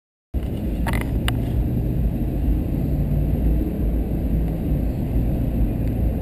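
Car driving on a paved road, heard from inside the cabin: a steady low engine and road rumble that cuts in suddenly just after the start, with two light clicks about a second in.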